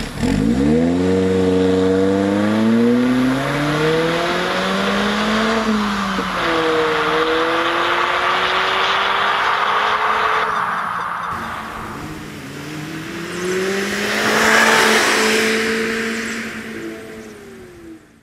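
Mazda Roadster (ND) four-cylinder engine through a Rowen stainless rear muffler, pulling away from a stop and accelerating hard. The exhaust note climbs in pitch, drops at each of two upshifts and climbs again. It swells loudest late on, then fades out.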